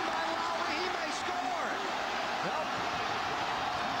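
Stadium crowd cheering during a football play: a steady din of many voices, with single shouts rising and falling above it.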